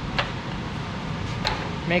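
Two light clicks from the bead roller's metal adjustment hardware being handled, over a steady low shop hum.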